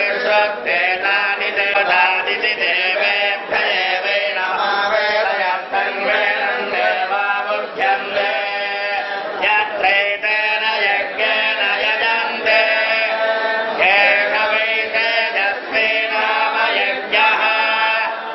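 A group of men chanting together in unison, a Srivaishnava devotional recitation, steady and continuous.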